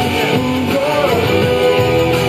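A man singing a pop-rock song live into a microphone, accompanying himself on a strummed guitar.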